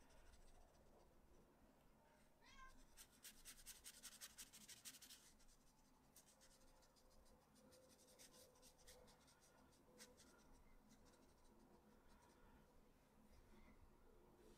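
Near silence, with faint scratchy strokes of a watercolor brush on textured paper, densest about three to five seconds in and sparser afterwards.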